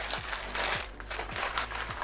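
Crinkling and rustling of a microwave popcorn box and its cellophane-wrapped paper bag being handled and pulled out, in irregular short bursts.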